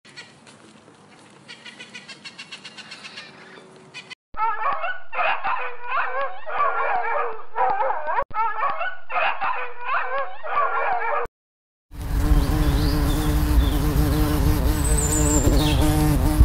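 A series of separate animal sounds: first a faint rhythmic chatter, then a dog giving repeated short, wavering whining calls for about seven seconds. After a brief gap a steady low buzz comes in, with a few high chirps over it.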